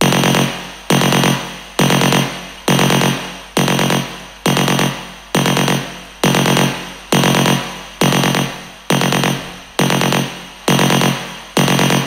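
A single percussive electronic hit from a techno track, soloed and looping about once a second, each hit fading into a long reverb tail. It is running through a soft clipper that cuts off its attack and brings the reverb forward.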